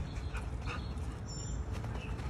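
A few short, faint high-pitched animal squeaks and chirps, one rising quickly near the middle, over a steady low rumble.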